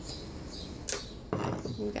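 A single short click from handling paper journaling cards, about a second in, then a woman's voice starts.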